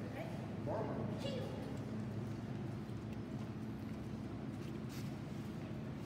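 Indoor hall ambience: a steady low hum throughout, with a brief bit of low voices about a second in and a few light taps near the end.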